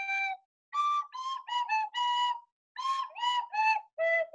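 Small blue end-blown whistle flute playing a melody of short separate notes, pitch stepping up and down, with a brief pause about two and a half seconds in.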